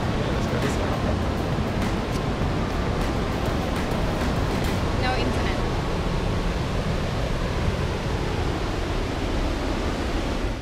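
Steady rushing of river water pouring over Pulteney Weir on the River Avon.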